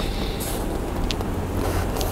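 Steady low rumble of a vehicle engine running nearby, with a brief high-pitched squeak about a second in.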